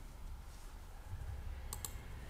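Two quick, faint clicks close together near the end, like a computer mouse being clicked, over a low steady hum.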